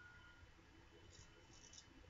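Near silence: a faint steady whine from the laptop's fan, with a faint scrape of a straight razor across lathered stubble about a second in.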